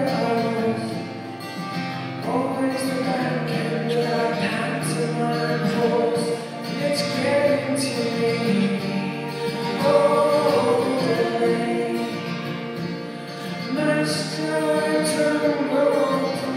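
Live performance of a folk-pop song: a man and a woman singing together over a strummed acoustic guitar.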